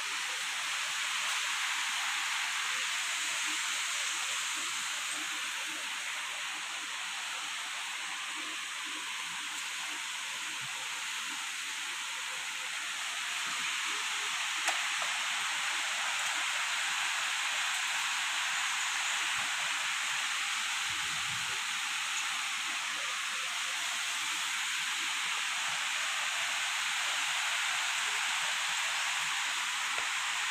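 A steady high-pitched hiss, a little quieter for several seconds early on, with a sharp click about halfway through and a brief low thump about two-thirds through.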